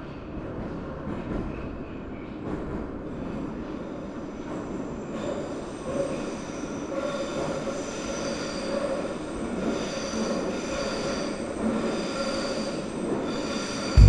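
Metro train running through the station with a steady rumble, a high wheel squeal joining about five seconds in.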